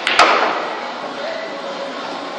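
A pool shot on a bar table: a light click of the cue tip on the cue ball, then a split second later a loud sharp clack of billiard balls striking, ringing briefly in the room.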